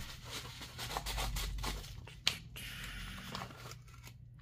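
Yellow padded bubble mailer being torn open and handled, its paper crinkling and tearing in short bursts, with one sharp click a little past halfway.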